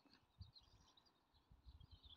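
Near silence: faint outdoor background with faint bird chirping.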